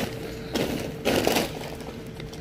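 Two short crackling, rustling bursts, about half a second and a second in, from packaging and bags being handled in a wire shopping cart, over a steady faint hum.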